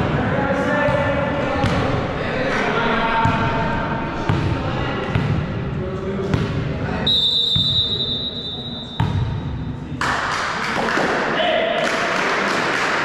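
A volleyball being bounced on a wooden gym floor, a knock about once a second, with boys' voices calling and chatting in an echoing sports hall. About seven seconds in, a high steady whistle-like tone sounds for about two seconds.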